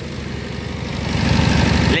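Yanmar NS40 single-cylinder diesel engine running at idle, a fast steady beat of firing strokes that grows louder through the second half.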